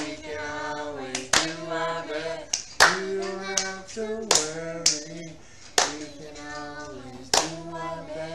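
A small group of voices singing a slow melody together, with hand claps on a steady beat, about one clap every second and a half.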